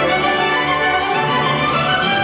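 Orchestral music led by strings, with sustained violin notes and a melody rising in pitch near the end.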